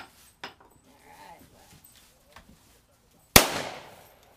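A single shotgun shot a little over three seconds in, loud and sudden with a short ringing tail, preceded by a few faint clicks of the gun being handled.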